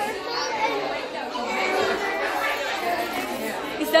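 Chatter of many overlapping voices, children among them, in a busy room.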